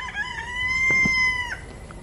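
A rooster crowing once, ending in a long held note that cuts off sharply.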